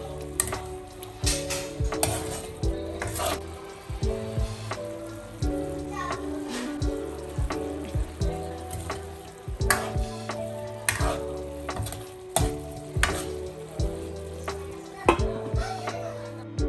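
Pork adobo sizzling in a stainless steel wok, with a metal ladle scraping and clinking against the pan many times as it is stirred. Background music plays underneath.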